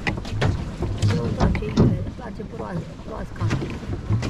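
Plastic swan pedal boat under way, its paddle wheel churning the water with a low rumble, and irregular sharp clicks and knocks from the hull and pedal mechanism. Low voices are heard briefly in the middle.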